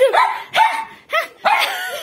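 Small white dog barking in about four short, high yips during a game of fetch with balls.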